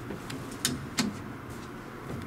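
Two short, sharp clicks about a third of a second apart over a low, steady hum.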